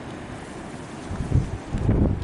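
Wind buffeting the microphone: a steady hiss with low, uneven gusts, stronger about a second in and again near the end.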